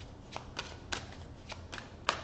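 A tarot deck being shuffled by hand: a quick, irregular run of short card snaps, about three or four a second.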